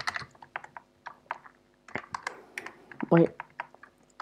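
Typing on a computer keyboard: quick, irregular keystroke clicks, thinning out briefly partway through before picking up again.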